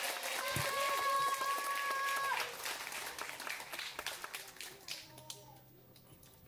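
Audience applauding, with one voice holding a long, steady cheer over the clapping for about two seconds. The applause dies away about four to five seconds in.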